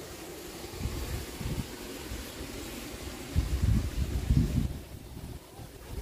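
Wind buffeting the microphone in uneven low gusts over a faint steady hiss, strongest a little past the middle.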